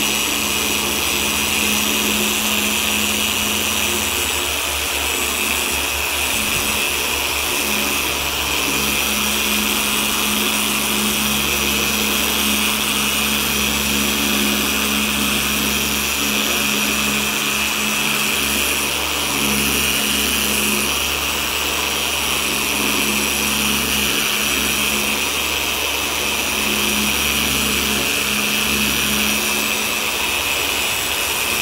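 Griot's Garage G9 dual-action polisher running steadily with a steady hum, its Eurofiber pad working polish over 2000-grit sanding marks in a truck's painted hood.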